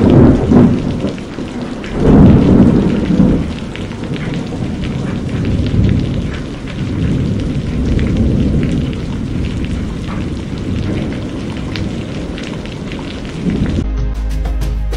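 Heavy rain and floodwater rushing and splashing against a car, heard from inside the car as it drives through deep water, with a continuous low rumble. It is loudest in two surges in the first few seconds, then runs on steadily.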